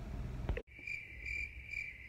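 Crickets chirping as a sound effect, a steady high trill that pulses about twice a second. It starts abruptly about half a second in, cutting off a low car-cabin rumble.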